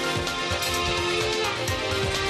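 Orchestral-electronic theme music of a TV news bulletin's opening titles, with sustained tones over a steady percussive beat.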